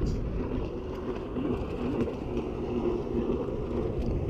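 Steady low wind rumble on the microphone, with a faint broken murmur above it.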